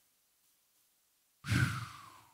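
A man's breathy 'whew' sigh into a handheld microphone about a second and a half in, falling in pitch and trailing off, after a moment of near silence.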